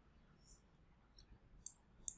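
Near silence with a few faint, short clicks, the clearest one near the end.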